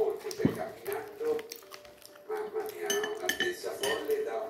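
A knife and fork clinking and scraping against a ceramic plate while eating, several separate sharp clinks, with one dull knock near the start.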